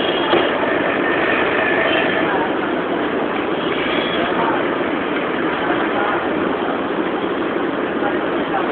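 Electric commuter train standing at the platform with its doors open, its onboard equipment running with a steady, even noise, mixed with voices around it.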